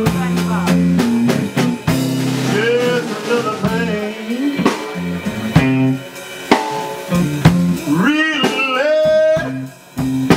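Live blues band playing an instrumental stretch: electric guitar and a drum kit with snare and rimshot strokes, with a bending lead line on top. The band drops out briefly just before the end.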